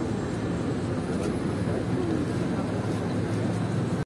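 Steady city-street rumble with people talking in the background. The sound cuts off abruptly at the very end.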